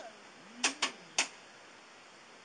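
Three short, sharp clicks a little after half a second in, the last one slightly apart from the first two, with a brief low hum of a voice under the first two.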